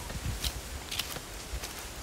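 Footsteps on ground covered in dry fallen leaves, about two steps a second, over a low rumble.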